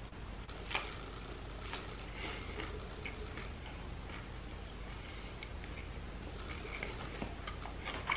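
A person chewing a mouthful of a fried-fish tortilla wrap: faint, irregular small clicks and crunches, over a steady low hum.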